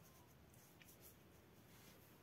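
Near silence, with a few faint, soft strokes of a paintbrush across watercolour paper.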